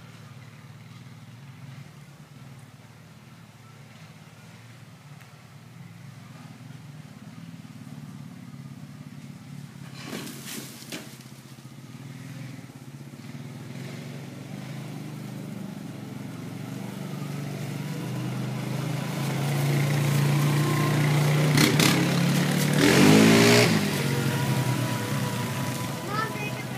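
Small youth four-wheeler (ATV) engine running at a steady pitch, growing gradually louder as it draws near. It is loudest near the end as it passes close, with a brief sweep in pitch.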